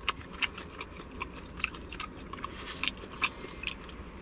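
Close-up chewing of a mouthful of buttered corn kernels, with irregular short mouth clicks.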